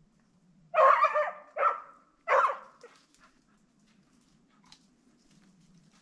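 A dog barking three times in quick succession, loud and sharp, while chasing a rabbit it has flushed.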